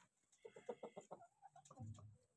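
Aseel chickens clucking faintly: a quick run of short clucks in the first second, with a low sound near the end.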